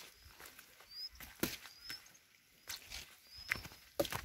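Footsteps on a rocky trail of stone slabs and loose grit, about five uneven steps scuffing and crunching. Faint short rising chirps come now and then behind them.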